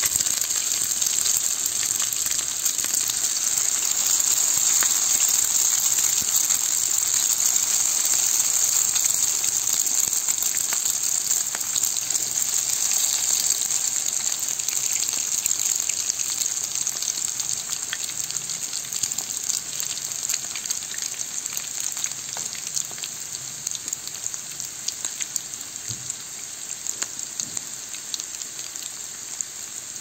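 Green bean patties in egg batter sizzling in hot oil in a frying pan: a steady crackling hiss that is loudest in the first several seconds, as fresh batter goes in, then gradually gets quieter.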